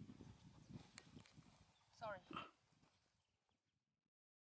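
Faint rustling and soft knocks from meerkats scuffling at play. About two seconds in there is a short, high call that rises in pitch. The sound then fades out to silence.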